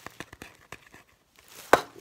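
Quick series of light taps and clicks from fingers on a Pringles can, ASMR-style, then one louder knock near the end.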